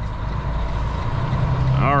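Diesel engine of a Western Star semi truck running as it drives with a heavy loaded trailer, heard from inside the cab as a steady low drone that grows a little stronger about a second in.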